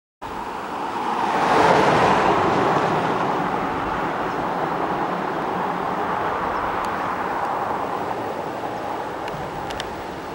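Road vehicle noise on a street: a rushing sound that swells about a second and a half in and then slowly fades, with a few faint clicks near the end.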